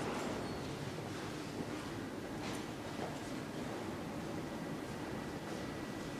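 Steady indoor background hum with a couple of faint clicks near the middle and a faint, thin high tone in the second half.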